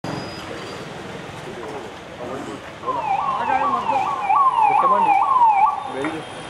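Police vehicle siren sounding a fast rising-and-falling cycle, about two a second, starting about halfway through and cutting off suddenly near the end, over street noise.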